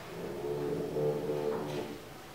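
A man's voice making a drawn-out wordless sound, a held hesitation noise with a steady pitch that breaks a couple of times before the next sentence.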